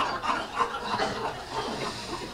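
Audience laughter dying down into scattered chuckles and murmurs.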